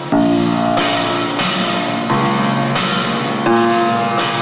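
Grand piano played loudly in a solo performance: a run of about six hard-struck chords, roughly one every 0.7 seconds, each with a bright, noisy attack over the sustained notes.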